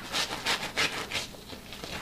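Hard scrub brush scrubbing a wet, soaked sofa cushion fabric, a run of quick rasping strokes, about four in the first second or so, then fainter brushing.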